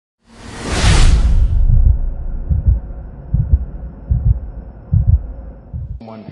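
Cinematic intro sound effects: a rising whoosh over a deep bass rumble, which peaks and cuts off about a second and a half in. Then come deep double thumps like a heartbeat, a pair a little under every second.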